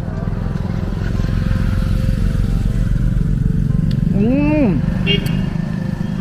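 A motor vehicle engine running close by, its rumble growing louder over the first few seconds, as of a vehicle passing on the road.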